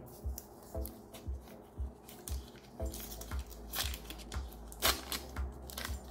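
Background music with a steady low beat, with a few short crackles of a butter stick's paper wrapper being handled near the middle and end.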